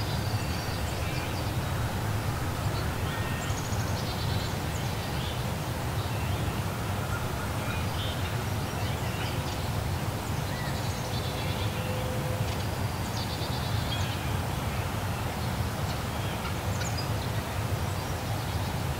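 Outdoor ambience of birds chirping and calling, with many short, scattered calls over a steady low rumble.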